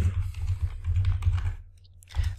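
Computer keyboard typing a short word: a quick run of dull keystrokes that stops about a second and a half in.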